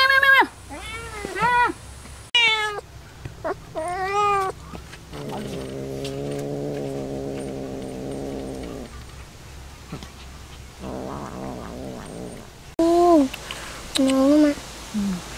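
Young cats meowing: a run of short meows that rise and fall over the first five seconds, then a long, low, steady yowl of about three and a half seconds, and a fainter low call later.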